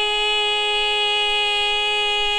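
A woman singing one long held note, steady in pitch, in a Carnatic-style devotional song, over a constant drone.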